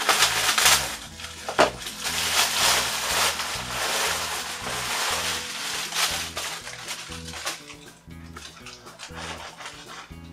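Clear plastic packaging bag crinkling and rustling as it is pulled off a nylon carry bag, dying away about seven seconds in. Background music with a steady bass line plays underneath throughout.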